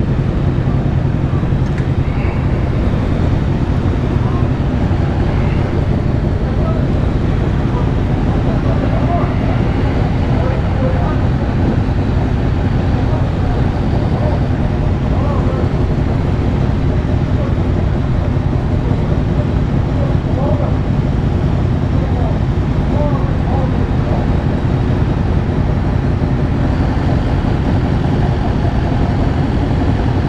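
Yamaha Tracer 7's 689 cc parallel-twin engine, fitted with an aftermarket DSX-10 exhaust, running steadily at low revs with a deep, even exhaust note.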